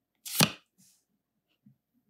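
A Pokémon trading card slid off the front of a small hand-held stack: one short papery swish, then a fainter brush of card on card.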